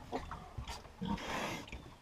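Piglets grunting amid small rustles and clicks, with one louder, harsher call about a second in that lasts about half a second.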